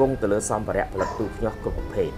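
A man speaking Khmer quickly over soft background music with long held notes.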